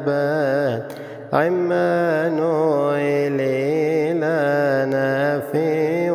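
A male voice chanting a long, wavering melisma of a Coptic tamgeed hymn over a steady low drone. The voice breaks off briefly about a second in, then carries on.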